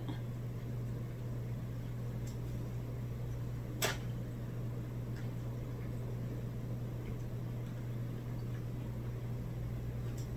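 Steady low hum of room tone, with a single short click about four seconds in.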